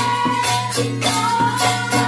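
Devotional kirtan music: tambourine and hand-held rattles shaken and struck in a steady beat over a sustained, held melody line.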